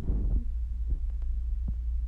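A plastic shopping bag rustles briefly at the start as a garment is pulled out of it, followed by a couple of faint handling clicks. A steady low hum runs underneath.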